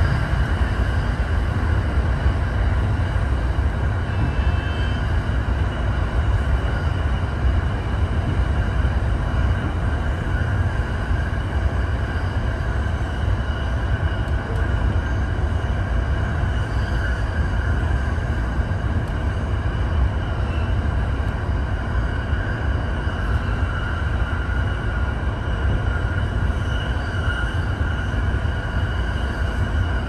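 Running noise of a JR East E231-1000 series commuter train at speed on continuous welded rail, heard from the driver's cab: a steady rumble with a ringing drone on top and no rail-joint clicks. The drone is the sound of freshly ground long rail.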